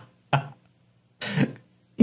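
The tail of a man's laugh: a short breathy burst about a third of a second in and a longer one just past the middle, with near silence between.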